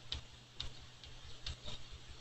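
Four light, unevenly spaced clicks of a computer keyboard, as a text selection is extended one character at a time, over a steady low hum.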